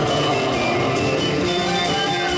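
Live band playing a Korean trot song, with electric keyboard and saxophone holding steady notes.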